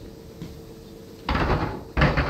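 Wooden furniture dollies with casters set down on a plastic-sheeted concrete floor: a noisy clatter of wood and wheels about halfway in, then a sharp knock at the end.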